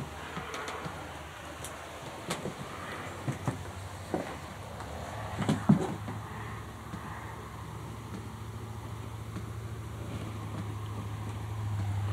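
A few faint, irregular taps, like water dripping. A low steady hum comes in about halfway through and grows louder toward the end.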